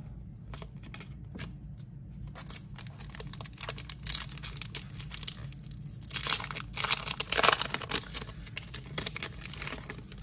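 A hockey card pack's wrapper being torn open and crinkled by hand, a string of crackling rips and rustles that is loudest from about six to eight seconds in.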